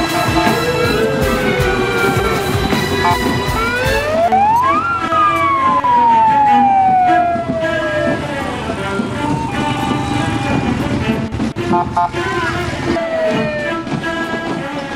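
Police escort siren wailing in long sweeps, rising about four seconds in and then falling slowly over about three seconds, over music with steady notes and regular beats in the first few seconds.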